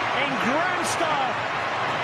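Football stadium crowd cheering after a goal, a steady dense roar of many voices, with a few short sharp bangs about a second in.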